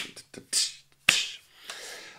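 A man's vocal percussion counting out a double-time feel: a sharp click, a short 'tsh' hiss, then another click running into a hiss, with a faint low hum near the end.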